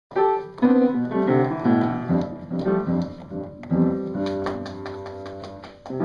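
An upright piano played by a toddler. Single notes follow one another for the first few seconds, then a cluster of keys is struck together about halfway through and rings out, fading.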